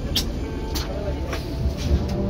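Amphibious tour bus's engine running while afloat, a steady low rumble, with a few short bursts of hiss.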